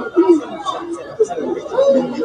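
Speech: several voices talking at once, untranscribed chatter.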